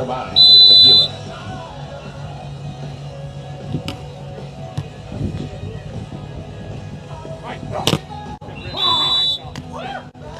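Referee's whistle blown twice in short, loud two-tone blasts: one about half a second in, signalling the serve, and one near the end, stopping the rally. A single sharp hit, a ball being struck, comes shortly before the second whistle, over background music.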